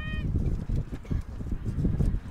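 An irregular low rumble of wind buffeting the microphone.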